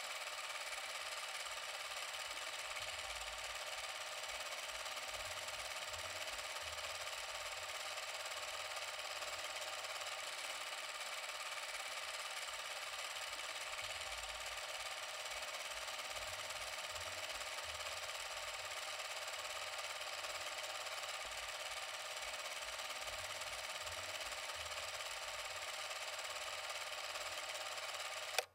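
Film projector running: a steady mechanical whirr with hiss and a faint flickering low rumble.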